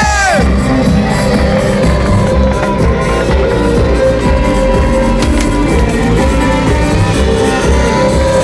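Loud live amplified band music through a PA, heard from within the audience: a heavy pulsing low beat under a steady held drone.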